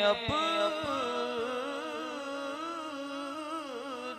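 A man's solo voice singing a naat, an Urdu devotional poem, into a microphone. After a brief break just after the start, he draws out one long line whose pitch wavers up and down, growing slowly quieter toward the end.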